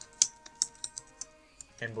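Typing on a computer keyboard: a handful of separate keystrokes at an uneven pace, the loudest about a quarter of a second in.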